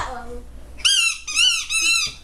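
A small plastic toy whistle blown by a toddler: three short, high-pitched toots in quick succession in the second half, each bending up and then down in pitch.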